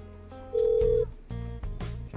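Background music with steady low notes. About half a second in, one loud, steady telephone tone sounds for about half a second as a phone call is being placed.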